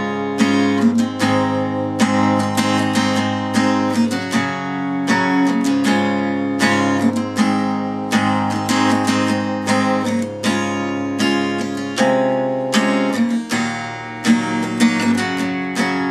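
Acoustic guitar, tuned a half step down, strummed steadily through a progression of open chords, the chord changing every second or two.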